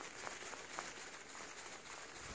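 Blue-and-gold macaw flapping its wings hard while gripping a hand, a faint, even airy rush with light beats a few times a second.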